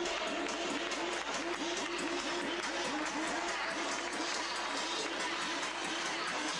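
Applause from a crowd, with music playing over it.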